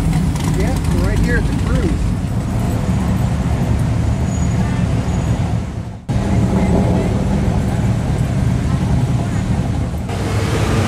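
Sports car engine idling with a deep, steady rumble. About six seconds in it drops out suddenly, and another engine's steady idle rumble takes over.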